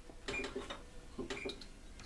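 Electronic oven control panel being pressed to set the preheat: button clicks with two short beeps, one about a third of a second in and one about a second and a half in.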